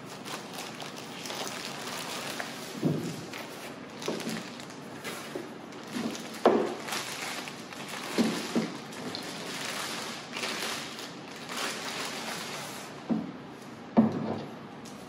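Plastic wrapping crinkling and rustling as a folded camera tripod is pulled out of its carry bag and unwrapped. Several short knocks come as the tripod is handled and set against the table, the loudest about six and a half seconds in.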